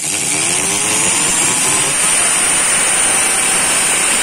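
Power drill spinning up with a rising whine, then running steadily as its bit drills through the thin sheet-metal case of an ATX power supply.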